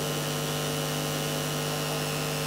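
A steady background hum with a few fixed tones, low and high, holding one even level.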